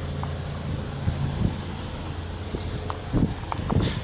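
A steady low hum under wind noise on the microphone, with a few faint taps.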